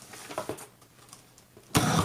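Scissor blade slitting the packing tape along the top seam of a cardboard box: a few faint clicks, then a loud, short tearing scrape near the end.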